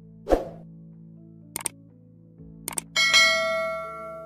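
Subscribe-button animation sound effects: a short thump, then two quick double clicks, then a bell ding about three seconds in that rings on and fades, over a faint steady low tone.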